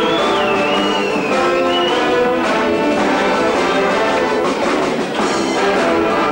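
A brass band playing carnival music, loud and steady.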